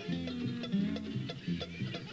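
Live bluegrass band playing an instrumental bit between sung lines: acoustic guitar and other plucked strings keep a quick, regular rhythm under held notes.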